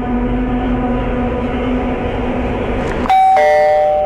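Dark suspense underscore with a steady drone, cut by a sudden loud bell-like chime about three seconds in that keeps ringing and slowly fades.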